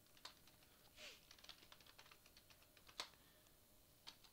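Faint computer keyboard typing: a run of soft key clicks, with one louder keystroke about three seconds in.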